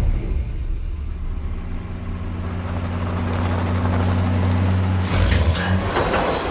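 Heavy truck in a film soundtrack: a deep, steady engine rumble that grows rougher and noisier over the last couple of seconds.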